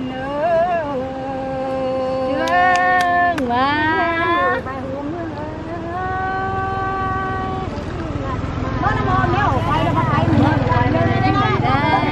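A woman singing a Tày khắp folk song unaccompanied, in long held notes that slide up and down in pitch. From about eight seconds in, the singing becomes quicker and more broken up, over a low rumble.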